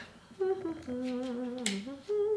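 A woman humming to herself with closed lips: a few held notes, stepping down in pitch, beginning about half a second in.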